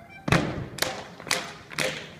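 Schuhplattler dancers slapping and stamping: a sharp slap or stomp about every half second, evenly in time, with lighter hits between, over faint music.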